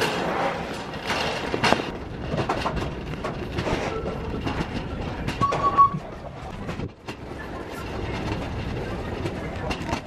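Metal shopping cart rolling over a hard store floor, its wheels and wire basket rattling steadily under a load of wooden posts.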